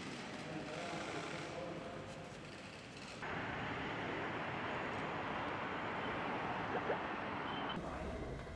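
Room ambience with faint voices, then about three seconds in a switch to steady road traffic noise from cars and trucks on a multi-lane highway.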